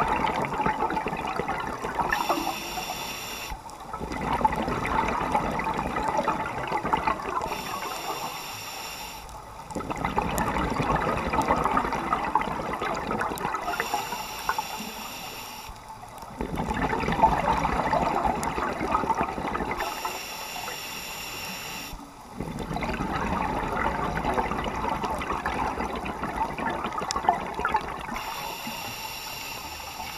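Scuba regulator breathing heard underwater: a short, high hiss of an inhale, then a long rush of exhaled bubbles, repeating about every six seconds, with five breaths in all.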